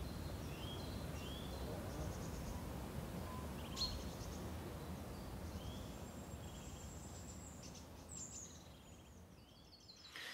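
Faint birds chirping in short repeated calls over a low background rumble, with a single click about four seconds in. The rumble fades toward the end.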